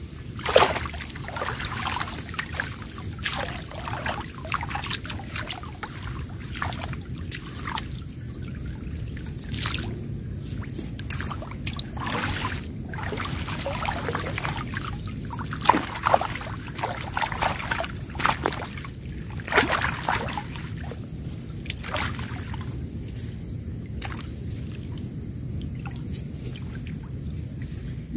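Water sloshing and trickling around a chicken-wire mesh fish trap being moved through shallow water, with irregular sharp splashes scattered throughout.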